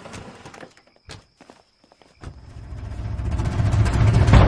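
A few footsteps and sharp clicks, then a near-silent pause of about a second. After that a deep rumble starts and swells steadily louder, building into the film's percussive score.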